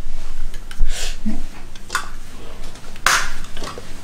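A few short knocks and clicks of small objects being handled on a tabletop, the loudest a knock a little under a second in, with a brief rustle just after three seconds.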